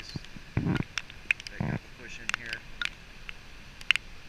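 Raindrops tapping on the camera, many sharp irregular clicks, over the steady hiss of surf on a stony beach. Two low buffets of wind on the microphone come about half a second and a second and a half in.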